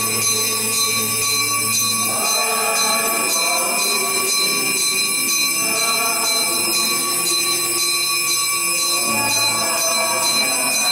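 Church music in long sustained phrases of a few seconds each, with a steady high-pitched electronic whine running under it throughout.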